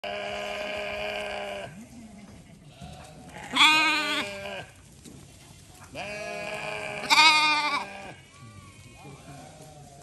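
A flock of domestic sheep bleating, several long calls one after another. The loudest come about three and a half and seven seconds in, with a quavering pitch.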